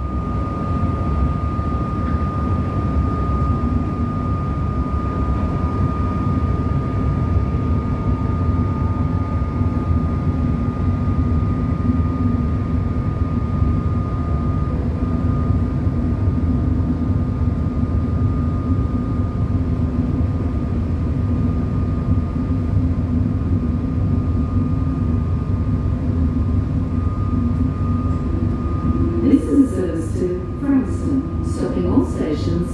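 Steady rumble inside an electric suburban train carriage as it runs and draws into a station, with a thin steady high whine throughout.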